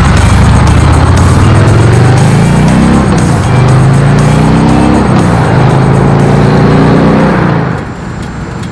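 Harley-Davidson FXDR 114's Milwaukee-Eight 114 V-twin accelerating hard. The exhaust note rises in pitch and drops back at gear shifts about three and five seconds in, then climbs again. It cuts off shortly before the end.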